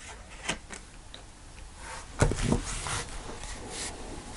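Tarot cards being handled and laid down on a cloth-covered table: a few light taps, then a louder rustle and scraping of a card slid across the cloth about two seconds in.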